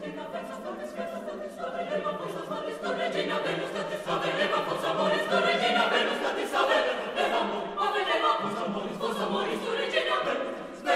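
Mixed chamber choir singing a cappella, many voices together with crisp, rhythmic articulation. The singing grows louder over the first half and stays full.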